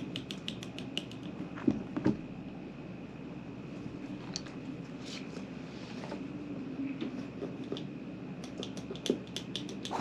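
Utility knife and small scissors being handled and used to cut laces and tags on a pair of sneakers. Runs of quick light clicks come in the first second and again near the end, with two louder knocks about two seconds in, over a steady low hum.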